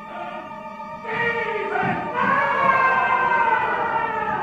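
Opera singing voices with orchestra in a live stage recording, swelling louder about a second in, with the voices' pitch sliding downward in the second half.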